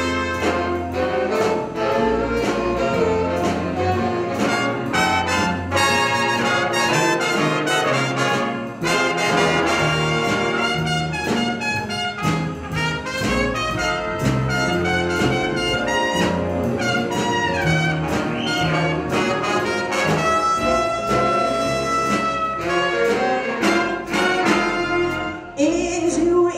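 Jazz big band playing an instrumental passage with its trumpet section out front, backed by saxophones, upright bass and drum kit.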